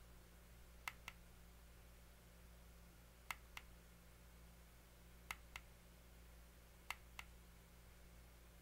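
Fire button of a squonk mod clicking in pairs, a press and a release, four times about two seconds apart while the new coils are pulsed. The clicks are faint and short over a steady low hum.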